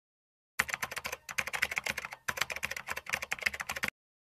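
Rapid keyboard typing clicks, a typing sound effect laid under text being typed onto the screen. They start about half a second in, break off briefly about halfway through, and stop just before the end.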